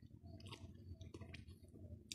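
Faint chewing: small wet mouth clicks of someone eating a bacon-wrapped chipolata, close to near silence.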